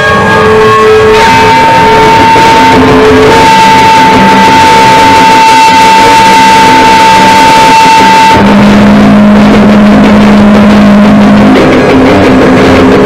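Very loud harsh noise music: a dense wall of distortion with a held high tone running over it. About eight seconds in, the high tone cuts off and a lower steady drone takes over.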